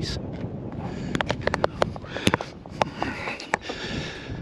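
A run of irregular sharp clicks and taps over a steady hiss, from a handheld camera being moved and handled.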